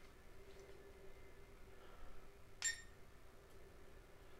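Near quiet with a faint steady hum, broken about two-thirds of the way in by a single sharp click with a brief high beep: a gimbal-tilt button being pressed on the Syma X500 drone's controls.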